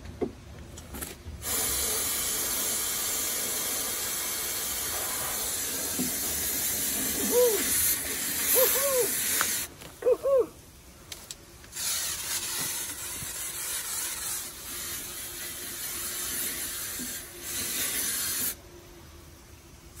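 Aerosol insecticide can spraying a paper wasp nest, a steady hiss in two long bursts of about eight and seven seconds with a short gap between. A few short hooting vocal sounds come near the end of the first burst.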